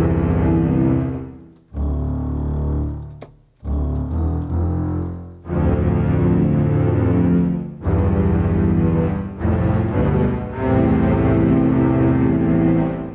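Sampled violin section from Reason's Propellerhead Orkester sound pack, played on a keyboard two octaves below middle C. It sounds as a run of about six held string chords, each one building up and then falling away.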